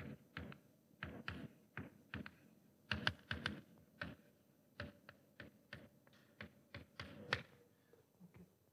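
Chalk writing on a chalkboard: a string of short, irregular taps and strokes, a few a second, with louder taps about three seconds in and near the end.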